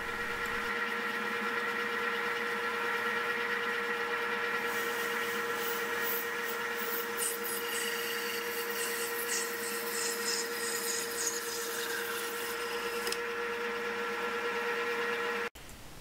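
Manual metal lathe running with a steady hum and whine while a carbide parting tool cuts through a spinning blue acetal blank, stringy plastic swarf peeling off. A rougher, uneven cutting noise comes and goes from about five seconds in until about thirteen, and everything stops abruptly shortly before the end.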